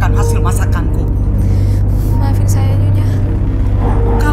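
Dialogue over dramatic background music, with a steady low drone under the voices throughout.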